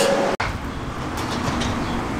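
After a sudden cut about a third of a second in, steady outdoor city background noise: a low, even rumble of distant traffic.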